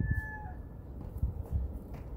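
A rooster's crow: one held note that dips and ends about half a second in. Low rumble with a few soft knocks follows.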